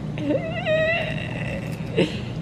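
A single drawn-out, high-pitched vocal sound that wavers at first and then holds one steady note for over a second before stopping just before the end, over a faint steady low hum.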